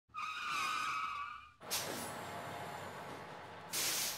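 Intro sound effect of a vehicle braking: a high, wavering squeal for about a second and a half, then a burst of hiss that fades away, and a second short, sharp hiss near the end.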